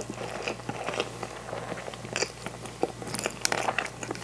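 A person chewing a mouthful of natto and white rice, with irregular mouth clicks and smacks.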